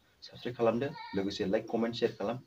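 A man speaking in Bodo, talking steadily to the camera.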